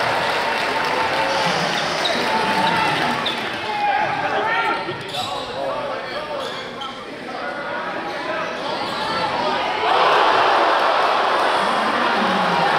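Live court sound in a gym: a basketball bouncing on a hardwood floor, with players and spectators calling out. About ten seconds in, the crowd noise jumps to loud cheering.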